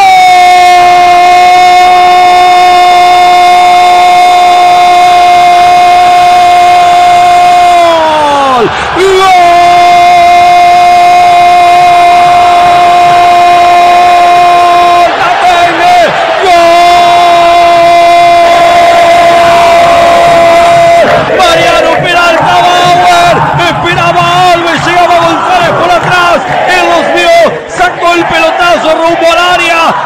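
Radio football announcer's drawn-out goal scream, the "gol" held on one steady pitch for about eight seconds before falling away. He takes a breath and holds it twice more. Near the end it breaks into shorter, wavering shouts.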